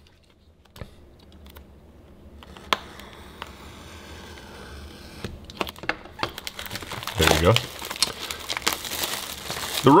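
Plastic shrink-wrap crinkling and tearing as it is worked off a sealed hockey card hobby box. It starts as scattered crackles and grows into a louder, denser crinkling toward the end.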